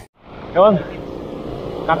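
Steady road noise of highway traffic and wind heard while riding along a roadside shoulder, with one short vocal sound about half a second in. It cuts in after a brief gap.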